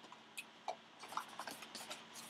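Faint handling of a cardboard trading-card box: a few light ticks and rubs as it is slid and turned in the hands.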